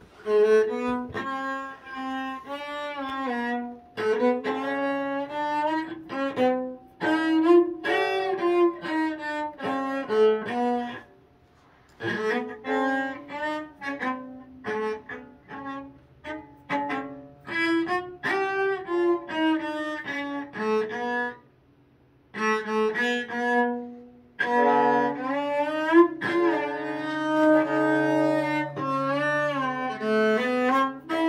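Cello being bowed, playing a melody of short notes in phrases, with two brief pauses, about eleven and twenty-two seconds in.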